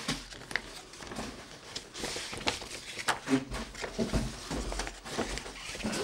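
Paper rustling and crinkling as a large kraft-paper envelope is handled and opened, with scattered small crackles and scrapes.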